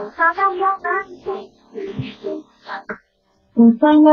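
A high, sing-song voice in short notes, breaking off sharply about three seconds in, then coming back with a long held note near the end.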